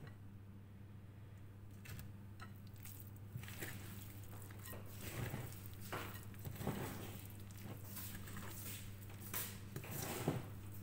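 A fork stirring thick carrot cake batter in a glass mixing bowl: irregular wet squelches and the fork clicking and scraping against the glass. It starts about two seconds in and gets busier, over a steady low hum.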